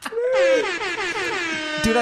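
A long, high-pitched wailing sound that wavers and falls in pitch for about a second and a half, then stops abruptly.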